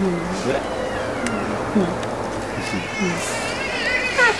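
A few short wordless vocal sounds, each a brief pitch glide, with gaps between them.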